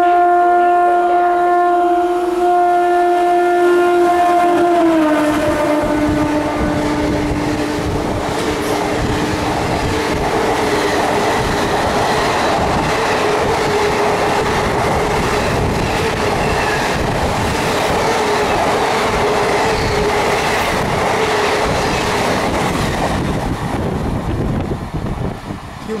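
A WAP-1 electric locomotive's horn sounds long and steady as the express approaches at speed, dropping in pitch about five seconds in as the locomotive passes. The passenger coaches then rush past with a loud, steady rumble and wheel clatter for nearly twenty seconds, easing off near the end.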